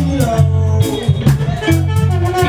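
Live electric blues jam: electric guitars with bending notes over a steady bass guitar line and a drum kit keeping time.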